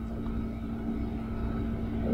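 Steady low rumble with a constant hum running through it: the room and tape background noise of an old cassette recording.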